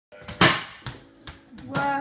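A ball thudding and bouncing on a wooden floor: a few knocks, the loudest about half a second in, with a voice starting near the end.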